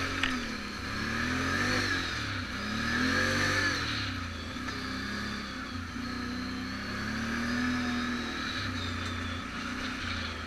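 Off-road vehicle's engine under way on a rough dirt trail, its revs rising and falling again and again with the throttle. A single sharp knock just after the start.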